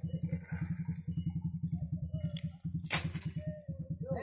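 Honda CB motorcycle engine idling with an even, rapid putter while the bike is walked across a bamboo bridge, with one sharp clack about three seconds in.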